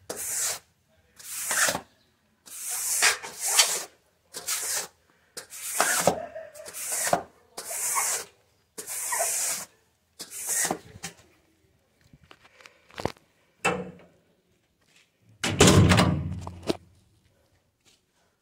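A rubber floor squeegee swept in repeated strokes across wet ceramic floor tiles, pushing water along with a wet swish about once a second, then a few scattered scrapes. A louder, deeper rustling noise comes about three seconds before the end.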